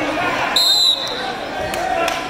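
A referee's whistle blown once, a short, steady, shrill blast about half a second in, over the voices of spectators.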